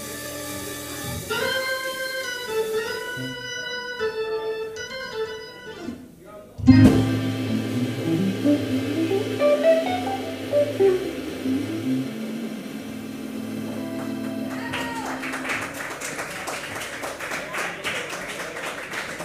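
Hammond organ, electric guitar and drum kit playing the close of a tune: held organ chords, a sudden loud full-band hit about seven seconds in, then organ runs over a held low note. The music stops near the end and applause and clapping follow.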